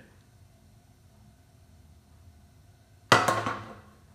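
A single sharp clank, something knocking against the steel worktable, about three seconds in, ringing out and fading within a second; before it, only faint room tone.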